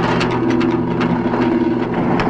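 Dramatic film background score: a loud, held low chord with a fast rattling tremolo that fades away within the first second, leaving a steady drone.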